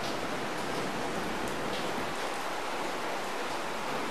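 Steady hiss of recording background noise, with no speech.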